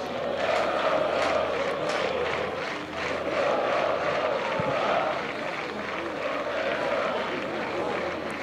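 Football supporters on a stadium terrace chanting together, a dense mass of voices that swells and falls in long waves.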